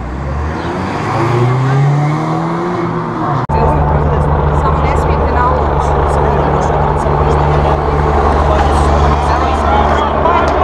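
A car driving past with its engine note rising as it accelerates. After a sudden cut, a steady low drone runs on under people talking.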